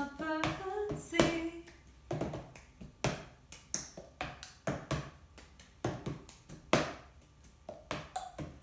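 Cup-song percussion: a cup clapped between the hands, tapped and knocked down on a tabletop in a steady pattern of claps and knocks, about two to three strikes a second, following a short sung phrase in the first second.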